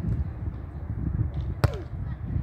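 One sharp smack about one and a half seconds in, a hand striking a beach volleyball on a float serve. It sits over a steady low rumble of wind on the microphone.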